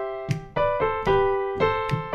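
Piano chords played in a syncopated rhythm: a C/G chord, then an A-minor third. There are several strikes in two seconds, each ringing and fading before the next.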